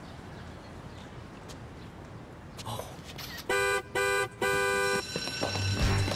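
Car horn honked three times in quick succession, the third honk slightly longer.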